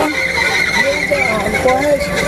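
Indistinct, wavering speech from a man's voice, softer than the talk around it.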